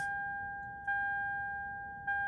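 A 2007 Lexus ES350's dashboard chime dinging repeatedly, one clear electronic tone struck about every second and fading between strikes.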